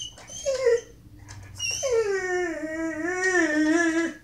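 Large dog whining at a paused TV show: a short falling whine about half a second in, then a long, drawn-out whine from just before two seconds in that drops in pitch and holds with a slight waver until the end. It is the dog complaining because his show has been paused.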